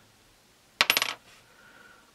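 A metal washer dropped onto the workbench: one sharp clink with a brief high ring, a little under a second in.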